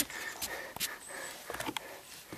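A few soft clicks and taps, about a second apart, over a quiet background.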